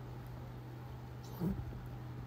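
A steady low hum with one short animal-like cry about one and a half seconds in.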